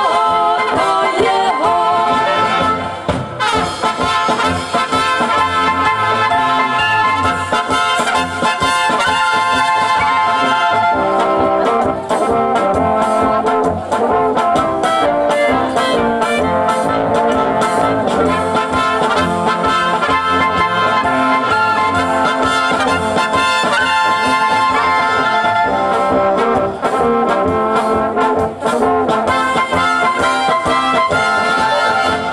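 Czech brass band (dechovka) playing a dance tune: trumpets and clarinets over tenor horns and tuba, continuous and loud.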